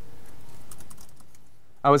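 Laptop keyboard typing: a quick run of light keystrokes, about a command's worth of key taps in the first second.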